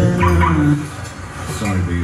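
A voice holding drawn-out pitched notes in the ad's soundtrack, fading about three quarters of a second in, followed by a shorter pitched sound near the end.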